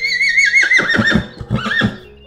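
A horse whinnying: one loud, high, quavering call that falls in pitch and breaks into shorter pulses in its second half.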